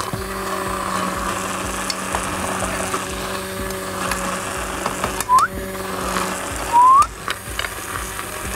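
Handheld immersion blender running steadily in a glass jar, whirring as it emulsifies an egg, lemon and garlic mixture into Caesar dressing. Two short rising squeals cut in over the hum about five and seven seconds in; the second is the loudest sound.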